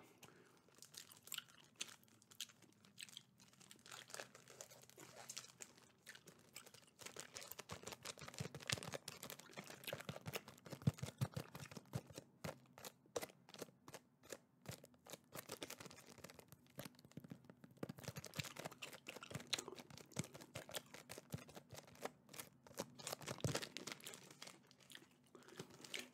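Wrapper of a Hershey's Cookies 'n' Creme candy bar crinkling as it is handled close to a microphone: a faint, dense run of small crackles and clicks.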